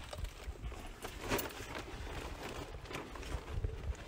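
Footsteps on dirt and conifer-needle litter, irregular and soft, with light knocks and rustles from a carried canvas bag of traps.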